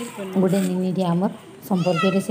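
A person's voice in drawn-out tones held on a steady pitch, like singing or chanting, with a short pause a little past the middle.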